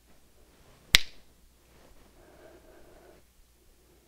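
A single sharp snap about a second in, with a brief ring-out in a small room.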